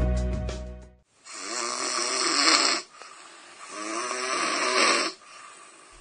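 Background music fades out, then a person snores loudly twice, each snore about a second and a half long with a rattling, throaty sound. The snoring introduces an advertisement for an anti-snoring device.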